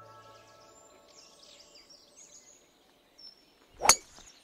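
Birdsong over faint outdoor ambience. Near the end comes one sharp, very short crack, the loudest sound, of a golf club striking a ball.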